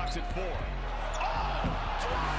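Basketball game audio from an arena: steady crowd noise with a ball dribbling on the hardwood court.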